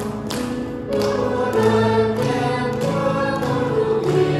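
Small mixed choir of men and women singing a hymn in the Iu Mien language in held notes, accompanied by piano. A new phrase enters about a second in.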